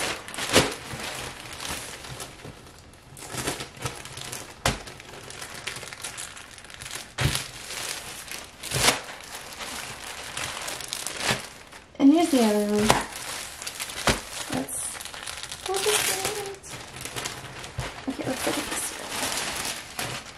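Clear plastic garment bag crinkling and crackling as a packaged T-shirt is handled and opened, in irregular sharp rustles with short pauses.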